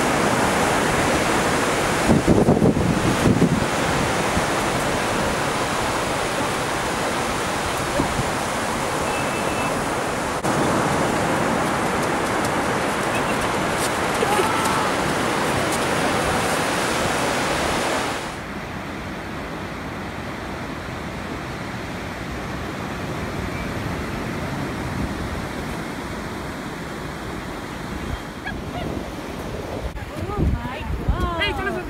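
Ocean surf breaking on a sandy beach, a steady wash of noise, with a brief rumble of wind on the microphone two to three seconds in. About eighteen seconds in the wash drops suddenly to a quieter level.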